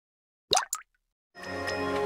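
Two short plopping sound effects about half a second in, each sliding upward in pitch, then intro music with held tones fading in near the end.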